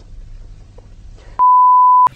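A single loud electronic beep, one steady pitch held for about two-thirds of a second, starting about one and a half seconds in. Before it there is only a faint low hum.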